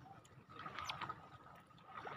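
Quiet outdoor ambience with a faint steady high tone and a short sharp sound just under a second in.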